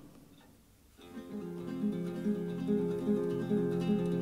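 A short break of near silence, then a solo acoustic guitar comes in about a second later, picking a repeated figure of notes between verses of a folk song.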